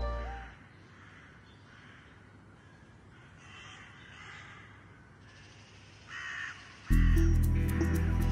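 Background music fades out. In the quiet that follows, crows caw faintly several times, and one louder caw comes about six seconds in. Music with a beat cuts back in near the end.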